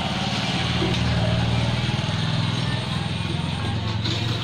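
A motor running steadily: a low, evenly pulsing rumble, with a hiss of background noise over it.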